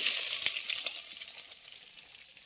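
Hot oil in a metal cooking pot sizzling as sliced onions are dropped in onto fried mustard seeds and curry leaves; the sizzle is loud at first and fades away.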